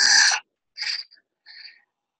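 A sleeping toddler's noisy mouth breathing: a loud gasping gulp of air at the start, then two shorter, fainter breaths. It is the struggle to draw air after holding his breath, the sign of an airway constricted by mouth breathing in sleep.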